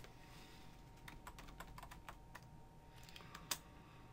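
Faint typing on a computer keyboard: a quick run of keystrokes about a second in, then a few more near the end, the last one a noticeably louder click.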